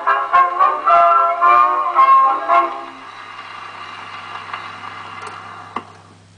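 A 1911 Columbia Grafonola Nonpareil, a hand-cranked acoustic phonograph, plays the final bars of a Columbia 78 record by a brass-led band. The music ends about three seconds in, leaving a quieter steady hiss from the record surface and one sharp click near the end.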